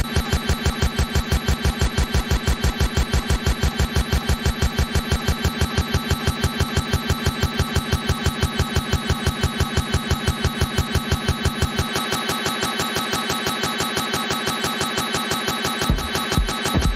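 Electronic dance music from a DJ mix in a build-up: one short sound looped and repeated rapidly, about five times a second, like a stutter roll. The bass is cut away about twelve seconds in, before the music changes near the end.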